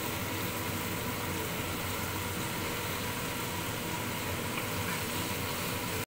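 Sliced chicken breast and onions sizzling in oil in a frying pan, a steady hiss.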